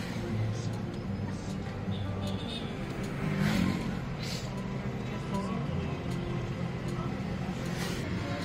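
Steady low rumble of a car's engine and tyres heard from inside the cabin while driving slowly, with a brief swell about three and a half seconds in.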